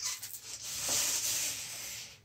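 Adhesive tape being pulled and pressed down over the backlight wiring: a steady hissing rub about two seconds long that cuts off at the end.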